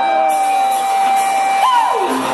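Live rock band with a crowd cheering, a long high note held steady and then bending up and sliding down near the end.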